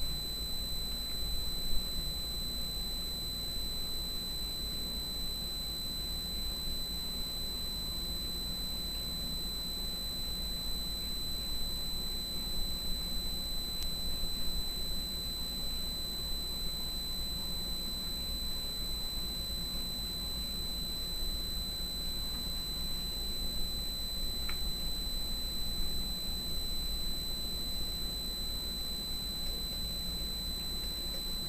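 A steady high-pitched electronic whine over hiss and a low hum: background electrical noise in the recording, with no other sound of note.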